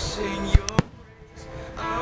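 Fireworks bursting: three sharp bangs in quick succession between about half a second and one second in, over a song with singing that plays throughout.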